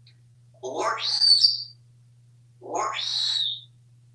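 African grey parrot giving two calls, each about a second long with a short gap between, each rising to a high note at its end.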